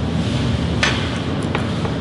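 Steady background noise of a restaurant dining room, with one sharp click just under a second in and a couple of fainter ticks after it.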